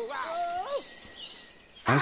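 One long wavering call lasting most of a second, dipping and then turning upward at the end, over birds chirping.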